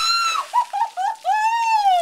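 A person shrieking at the shock of ice water poured over them: a long high cry, a quick run of short yelps, then another long, arching cry.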